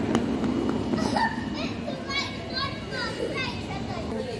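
Children's high voices calling out, with a wordless, gliding run of sounds in the middle, over the steady murmur and rumble of a large, busy hall.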